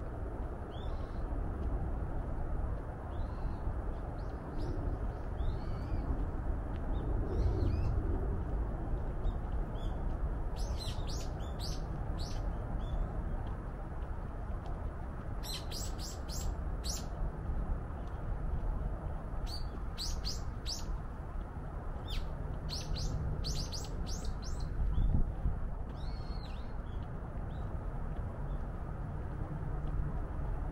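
Small birds chirping in the trees: several runs of quick, high, repeated notes, with fainter single calls between them, over a steady low background rumble.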